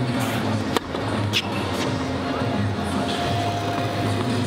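A tennis serve: one sharp pop of the racquet striking the ball under a second in, followed by a smaller sharp sound about half a second later. Background music and faint talk run underneath.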